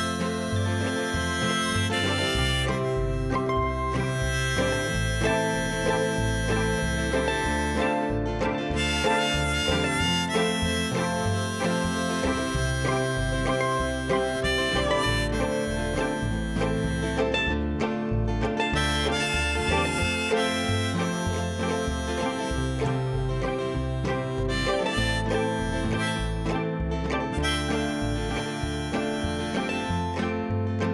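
Acoustic string band playing an instrumental break: mandolin, acoustic guitar and upright bass, with a held-note lead melody over the strumming.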